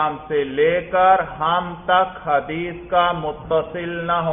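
A man's voice reciting in a drawn-out, sing-song chanting manner.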